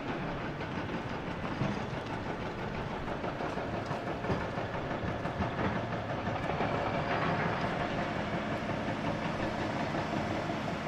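Several heavy crawler excavators working in a rock pit: diesel engines and hydraulics running in a steady mechanical din, with scattered knocks of buckets and rock. The din grows a little louder past the middle, with a higher hum coming up for a couple of seconds.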